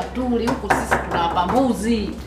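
A woman speaking, with several sharp clicks and clatter about half a second to a second in.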